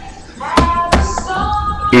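Background music playing steadily, with two sharp taps about a third of a second apart a little over half a second in.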